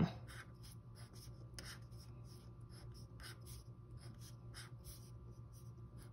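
Felt-tip marker drawing lines on a paper worksheet: a steady run of short, faint strokes, about three a second.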